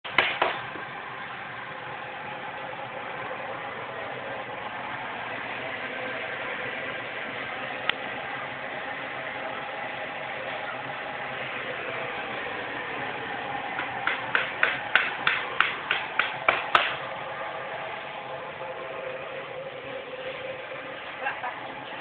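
High-pressure gas burner running steadily under a steel-drum steamer sterilising mushroom substrate, a constant rushing noise. About two-thirds through comes a quick run of about a dozen sharp knocks, roughly four a second.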